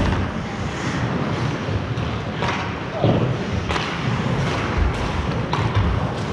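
Ice hockey play in an indoor rink: skate blades scraping the ice, a handful of sharp knocks from sticks and puck, and players' voices, all echoing in the arena.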